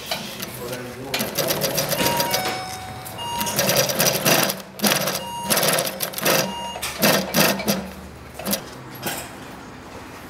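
Industrial feed-off-the-arm double chain stitch sewing machine running in short bursts as it stitches a seam.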